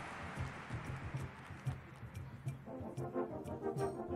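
Drum corps brass: a loud held chord dies away, then after a quiet stretch of soft low pulses, the baritone horns come in about two-thirds of the way through with a fast running figure of repeated notes, over faint percussion ticks.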